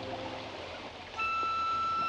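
Soundtrack music: a held chord fades out in the first half second, then a little over a second in a solo flute enters on one long, high held note over a faint, steady rushing background.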